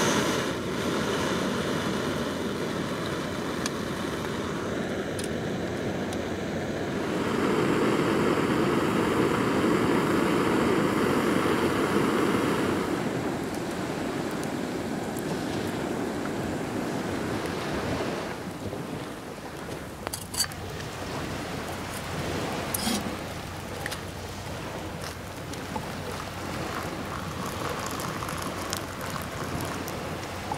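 A small gas-canister camping stove burning with a steady hiss, louder for several seconds near the middle. In the second half a quieter steady noise with scattered sharp pops, like a wood campfire crackling.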